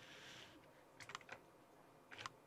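Faint light clicks, a quick cluster of four or five about a second in, over near silence.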